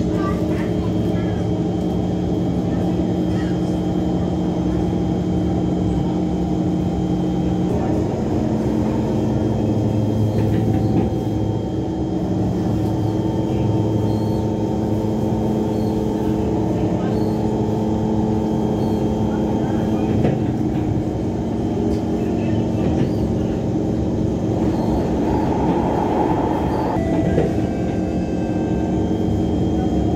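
An elevated metro train running, heard from inside the carriage: a steady rumble with a hum of held tones that shift now and then.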